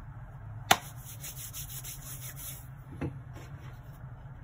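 Hands handling a small plastic sound card on a desk: a sharp knock just under a second in, then a quick run of faint scratchy ticks, and a softer knock near the three-second mark, over a steady low hum.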